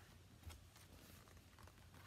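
Near silence: quiet room tone with a few faint soft handling noises from a hardback picture book being moved, the clearest about half a second in.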